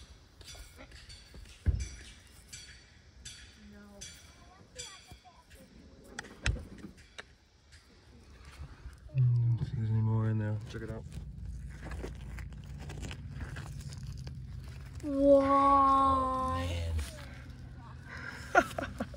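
Digging in dry, stony dirt: scattered scrapes and small clicks of stones and crystals being picked loose. A wordless voice is heard briefly near the middle and more strongly, as a held hum, near the end.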